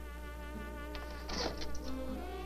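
Soft background music holding a buzzy, sustained note with a slight waver, over a steady low hum from the old 16mm film soundtrack. A brief louder sound comes about a second and a half in.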